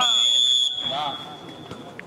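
Referee's whistle: one long, steady, high-pitched blast that starts sharply, is loudest for its first half-second or so, and then carries on more faintly until near the end.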